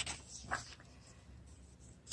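A coloring-book page being turned by hand: a brief, faint paper flap at the start and another about half a second in, then near quiet.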